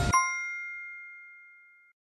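Quiz-show chime sound effect marking the correct answer: a single bell-like ding that rings out and fades away over about two seconds. The noisy countdown sound before it cuts off as the ding strikes.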